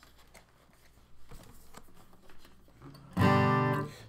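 A strummed chord on a Sigma DM-15+ acoustic guitar, struck once about three seconds in and ringing for under a second.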